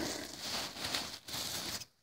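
Bubble wrap rustling and crackling faintly as a plastic model horse is pulled out of it, stopping shortly before the end.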